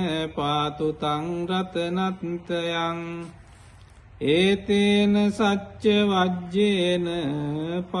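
Buddhist pirith chanting in Pali: a single voice recites in a slow, melodic, drawn-out chant. About three seconds in it breaks off briefly for a breath, then resumes on a long held note.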